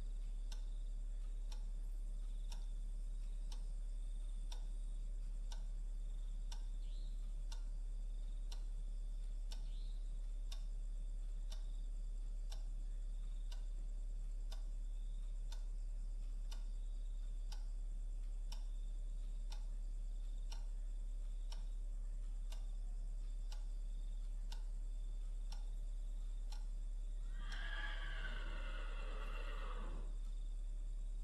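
A clock ticking steadily, about once a second, over a low electrical hum. Near the end a high, wavering cry falls in pitch for two or three seconds.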